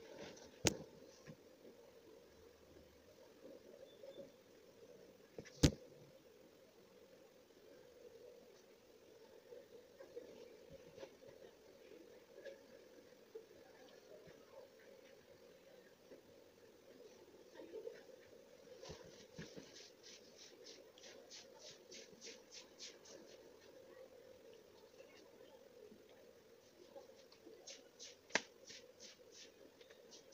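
Faint graphite pencil scratching on paper. Quick, even back-and-forth shading strokes come about four or five a second in a run past the middle and again briefly near the end. Three sharp clicks are the loudest sounds.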